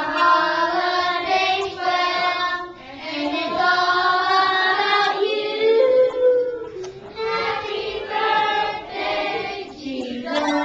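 Children singing a song together, one girl singing into a handheld microphone, in phrases with brief pauses about three and seven seconds in.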